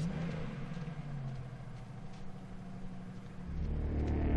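Low, steady rumble of a car in a film soundtrack, with a deeper, louder rumble coming in near the end.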